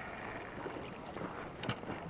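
Water splashing and wind buffeting the microphone as a hooked salmon fights at the surface, with one sharp click about 1.7 seconds in.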